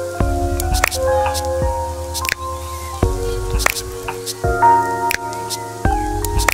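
Instrumental hip-hop beat played live on a Roland SP-404 sampler: chopped samples of held chords that change about every three seconds over a bass line, with sharp percussion hits.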